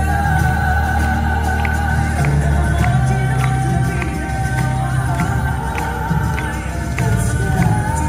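Drag queens singing live over a pop backing track with a steady beat, voices holding long notes, as heard from the audience of a theatre.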